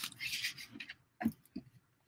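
Paper envelopes and a patterned paper journal cover rustling and sliding as they are pressed flat and folded by hand. Two short faint sounds follow a little over a second in.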